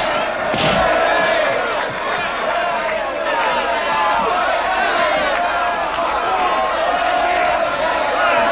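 Crowd of spectators shouting and cheering at a boxing bout, many voices at once, with a single thump just before a second in.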